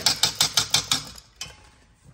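Wire whisk beating thick cranberry and chili sauce in a stainless steel bowl, clicking against the metal about seven times a second, then stopping about a second in. A single knock follows shortly after.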